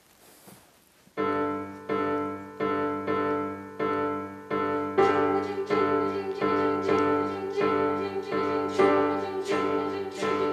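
Piano introduction: after about a second of quiet, chords struck roughly every 0.7 s, with quicker notes filling in from about halfway through.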